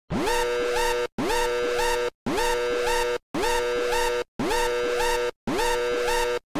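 Red alert klaxon sound effect: an electronic whoop that rises in pitch and then holds, sounding twice per cycle and repeating about once a second with short silent gaps between.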